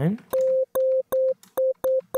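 Five short notes on one pitch, around C5, from a Serum software-synthesizer patch. Each is a sharp click followed by a plain sine-like tone that cuts off abruptly after about a third of a second. This is the kalimba patch at an early stage: a fast wavetable sweep from a noisy table to a sine, with no kalimba-style decaying volume envelope yet.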